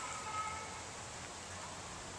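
Faint outdoor background noise, with a brief faint high tone at the start.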